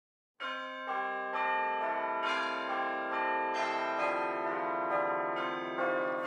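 Bells chiming over a title card, starting suddenly about half a second in. A new note is struck roughly twice a second and each one rings on under the next.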